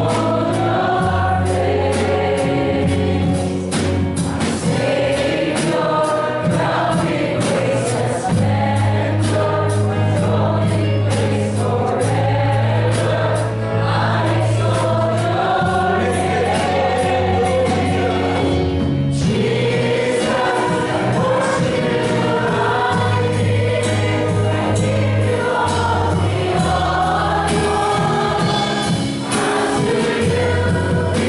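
A live worship song: singers over a band with electric bass, drum kit, guitar and keyboard, the bass holding long notes that change every few seconds.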